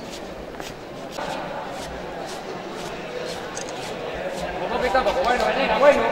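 Indistinct talking among a group of people, with one voice growing louder and clearer over the last couple of seconds.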